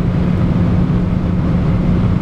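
Cabin noise of a VW Tiguan 1.5 TSI at about 180 km/h: steady wind and road noise with a low drone, a bit louder at this speed.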